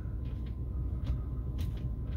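A few faint clicks of the truck's dashboard stereo controls being pressed over a steady low rumble in the cab.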